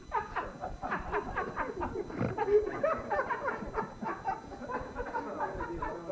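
People laughing hard in quick, broken bursts, starting suddenly as a take falls apart.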